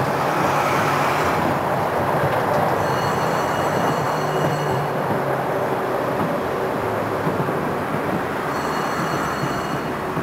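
Konstal 105Na tram running along street track, heard from inside the car as a steady rumble of wheels and running gear. A thin, high, steady whine sounds twice, for about two seconds each time: a few seconds in and again near the end.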